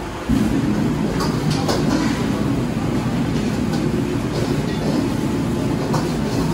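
Gas wok burner turned up: a loud low rumble starts suddenly about a third of a second in and runs steadily, with a few light metal clinks of a spatula on the wok.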